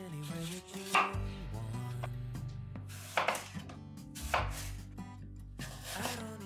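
A chef's knife slicing through a raw apple and meeting a wooden cutting board: several separate cuts a second or two apart, the sharpest about a second in, around three seconds and around four and a half seconds.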